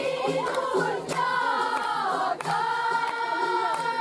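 Singing voices holding long notes, with a steady low drone underneath and a few sharp hits spaced out through it.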